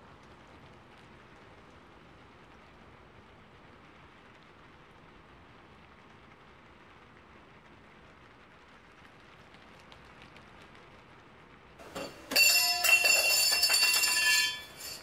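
Faint steady hiss of room noise, then about twelve seconds in a loud mechanical bell alarm clock starts ringing, a rapid metallic clatter with a bright ring.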